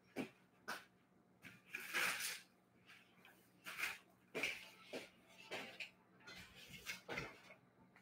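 Faint scattered knocks, clicks and a short scrape of a small wooden folding easel being handled and pulled out off-camera.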